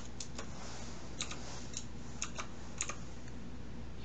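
Computer keyboard being typed on slowly: about ten separate keystrokes, irregularly spaced, over a faint steady low hum.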